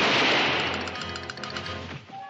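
A gunshot right at the start, its noisy tail fading away over about two seconds, while background score music comes in beneath it.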